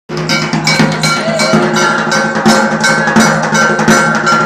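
Music of ringing metallic percussion, struck evenly about four times a second over a steady low tone.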